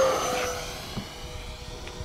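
Electric ducted fan of an Arrows F-86 Sabre RC jet at full throttle making a low fly-by: its whine is loudest at the start, drops in pitch as the jet passes, and fades as it flies away.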